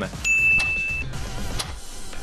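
Background music with one steady, high electronic beep lasting just under a second, starting about a quarter second in.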